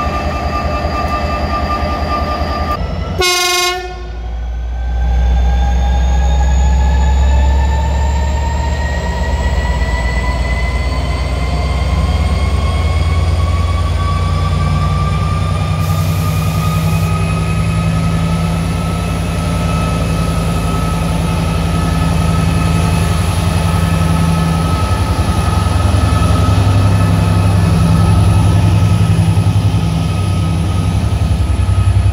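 Renfe Class 334 diesel-electric locomotive pulling a Talgo train away from a station: a heavy low engine rumble with a whine that climbs slowly and steadily in pitch as the train gathers speed. There is a brief break about three seconds in.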